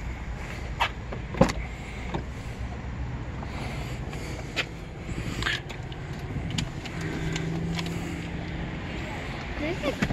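Clicks and knocks of a Ford Flex's driver door being opened and someone climbing into the leather seat, the loudest knock about a second and a half in. Then a short electric motor hum about seven seconds in.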